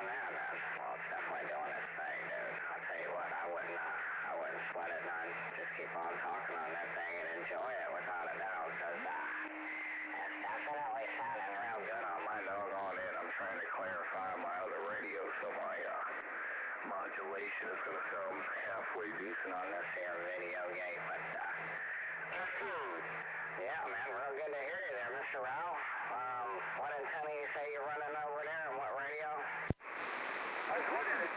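Single-sideband CB radio reception on lower sideband: unintelligible voices coming through the radio's narrow, tinny audio over hiss, with steady heterodyne tones under them. A sharp click and a brief dropout come just before the end.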